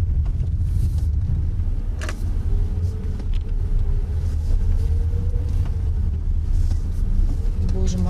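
Small sedan driving slowly over a rough dirt road: a steady low rumble of engine and tyres, with the engine note rising and falling gently in the middle.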